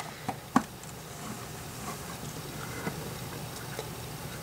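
Light clicks and taps of plastic LEGO bricks as an assembled brick-built jewellery box is handled and turned on a table. There are two sharper clicks within the first second, then a few faint ticks.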